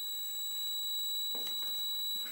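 Milwaukee M12 Sub-Scanner sounding a steady high-pitched tone, its signal that it is centred over a ferrous metal target. A faint short scratch of a pencil marking the drywall comes about midway.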